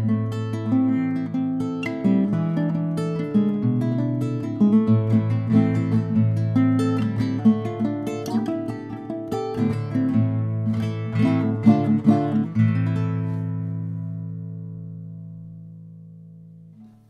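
A 1970s Mexican-made requinto, a small nylon-string guitar, played fingerstyle: a quick run of picked notes and chords that ends about twelve and a half seconds in on a final chord, which rings on and slowly fades.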